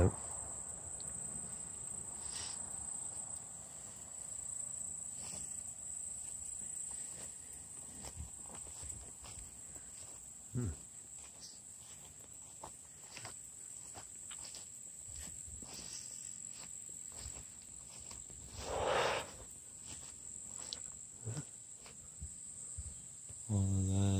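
A steady, high-pitched insect chorus buzzing on one pitch, with light rustling and scattered clicks of footsteps through tall grass. About 19 seconds in there is one louder brushing swish.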